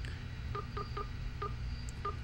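Keypad key-press beeps from a Sonim XP5s rugged phone as digits are typed into its contact search: four short, identical beeps.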